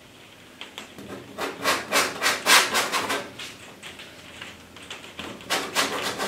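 Painting knife scraping acrylic paint across a stretched canvas in a quick series of short strokes, loudest in the first half, with a few more strokes near the end.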